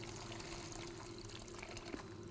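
Reef aquarium sump water trickling faintly, under a steady low hum from its running pump.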